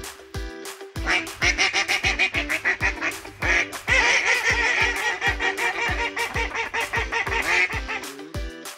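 A flock of ducks quacking in many overlapping calls that start about a second in and are loudest from about four seconds in, over background music with a steady beat.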